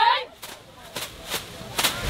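Cheerleading squad shouting a chant in unison, breaking off a moment in, followed by about four sharp hand claps spaced through the rest of the cheer.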